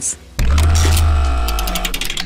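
Music sting for a news transition: a sudden deep bass hit with layered tones about half a second in, fading out, then a quick run of ticks near the end.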